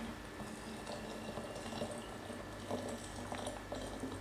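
Hot water being poured from a stainless-steel kettle into the glass lower bulb of a Cona vacuum coffee maker: a faint, steady trickle of filling, with a few light clicks in the second half.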